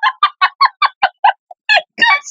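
A woman laughing hard: a fast run of short bursts, about five a second, pausing briefly around one and a half seconds in and picking up again near the end.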